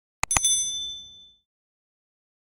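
Notification-bell sound effect: two quick clicks followed by a bright, high ding that rings out and fades within about a second.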